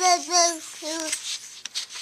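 A toddler babbling in a sing-song voice, a run of short held syllables that stops a little over a second in, followed by faint rustling and light taps.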